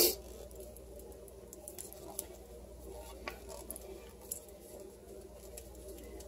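Tube of tomato paste being squeezed and folded down over a pot: faint squishes and a few light clicks. A short sharp sound comes right at the start.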